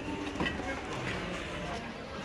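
Supermarket ambience: a steady low hum with faint voices in the background.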